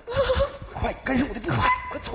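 Several short, clipped spoken phrases and quick vocal sounds from the performers, in broken bursts with gaps between them.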